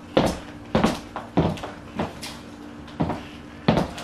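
Stuart Weitzman high-heeled pumps striking a wooden floor in walking steps: sharp heel clacks, about two to three a second and unevenly spaced.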